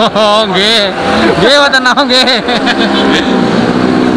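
A singing voice with a strong, wavering vibrato, moving into steady held notes near the end.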